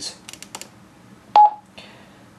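TYT TH-9800 mobile ham radio giving one short, sharp key beep about a second and a half in, as its front-panel controls are worked to change band; a few faint clicks from the controls come before it.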